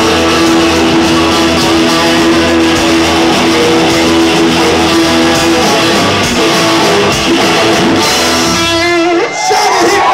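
Live rock band with electric guitars and drums ringing out the song's final chord at full volume. The band cuts off suddenly about nine seconds in, and the crowd starts cheering right at the end.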